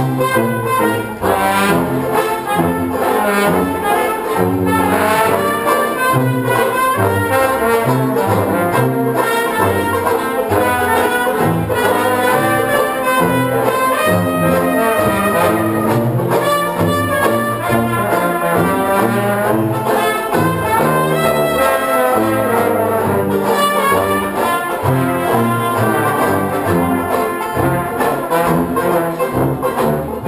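Banjo band playing an instrumental passage with no singing, banjos over a bass line that changes note regularly, with brass prominent.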